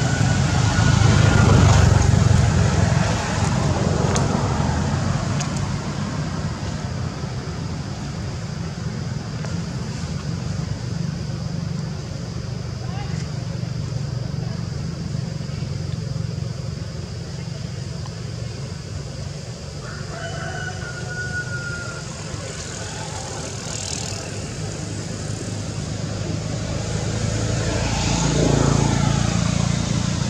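Continuous low rumble of outdoor background noise, louder in the first few seconds and again near the end, with a brief high-pitched call about two-thirds of the way through.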